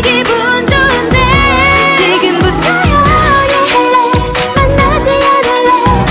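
Korean pop song playing: a female voice singing over an upbeat dance-pop backing with a steady beat.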